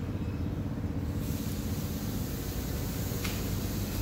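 Dual-action (DA) sander running steadily in the background as a low, continuous rumble, with a brighter hiss coming in about a second in.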